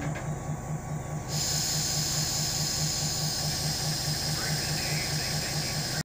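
Freight cars rolling slowly past on the rails, with a low pulse about four times a second. A steady high-pitched hiss starts suddenly about a second in and holds.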